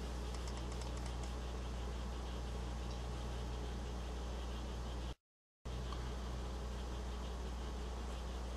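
A steady low hum, with a few faint ticks about a second in. Just after five seconds the sound cuts to complete silence for about half a second, then the hum resumes.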